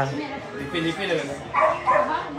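People talking in short, indistinct bursts of speech, louder near the end.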